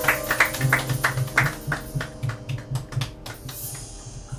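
Live jazz band (piano, upright bass, drums) with the audience clapping along in time, about three claps a second. The instruments fade out about halfway, leaving thinner, scattered clapping.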